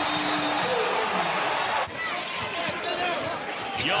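Arena crowd cheering a made three-pointer; about two seconds in the sound cuts sharply to quieter game noise from the court, with a basketball bouncing and short squeaks.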